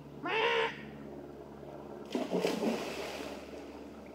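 A boy's short squawk imitating a penguin, followed about two seconds later by a splash as he dives into a swimming pool.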